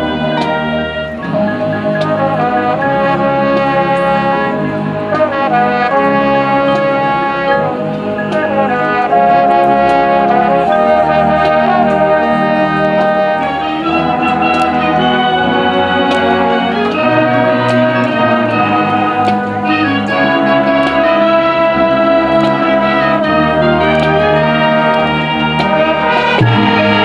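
High school marching band playing its field show: sustained brass chords from trumpets, mellophones and saxophones that change every second or two, with percussion strikes through it.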